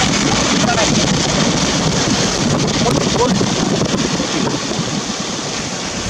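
Steady rushing noise of a vehicle driving on a wet road: tyre hiss and wind on the microphone, with faint voices in the background.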